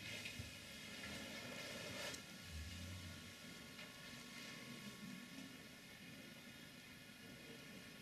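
Faint wet sucking of a cat nursing on a knitted wool blanket, over quiet room tone, with a brief low rumble about two and a half seconds in.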